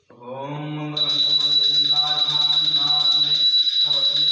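A male voice chanting a Sanskrit mantra in long held pitches. About a second in, a bell starts ringing continuously: a puja hand bell shaken without pause during the aarti.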